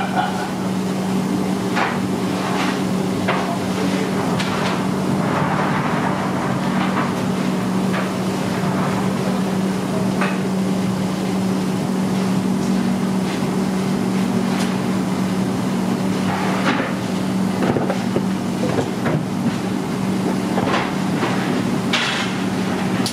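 A steady low machine hum in a bakery kitchen, with scattered sharp knocks and clatter every few seconds.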